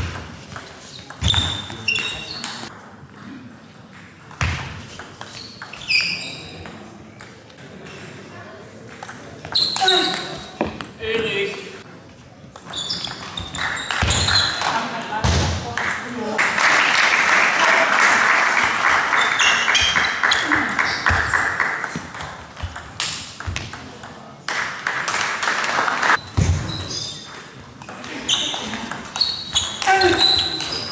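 Table tennis rallies: the plastic ball clicking sharply off bats and table in an echoing sports hall, with voices around. Past the middle comes a loud stretch of several seconds of dense noise, louder than the rallies.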